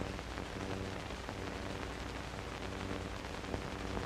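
Steady hiss with a low, even hum underneath; no distinct sounds stand out.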